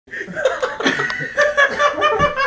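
People laughing in short bursts, with voices talking over it.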